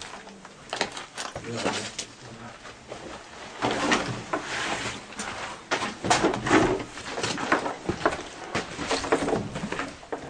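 Footsteps and scuffing of people walking through a damaged building, with many short knocks and clicks. Low, indistinct men's voices murmur in between.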